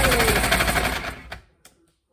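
Electric countertop ice shaver running as ice is pressed down onto its blade: a loud, fast rattling grind over a motor hum. It fades and stops about a second and a half in, followed by a few light clicks.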